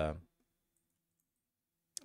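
A man's voice trails off, then near silence, broken near the end by a single sharp click just before he speaks again.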